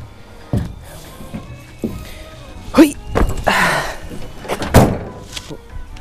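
Thumps and knocks on a pickup truck's bed and tailgate as someone climbs down, then a loud thunk about five seconds in as the tailgate is shut.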